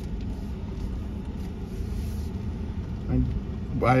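Ford F-150 pickup driving on a sandy dirt road, heard from inside the cab: a steady low rumble of engine and tyre noise.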